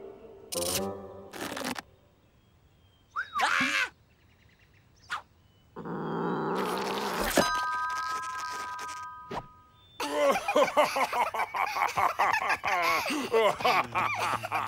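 A string of cartoon sound effects and wordless character voices: short voiced bursts in the first two seconds, a brief sweep about three seconds in, a loud rush of noise from about six seconds that ends in a sharp click followed by a held chord of three steady tones, then from about ten seconds a dense, wavering babble of many voices.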